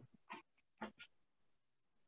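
Near silence, broken by three faint, brief sounds within the first second.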